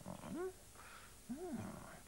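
A man's voice making two short wordless musing hums ("hmm"), each rising and then falling in pitch, one near the start and one about a second later.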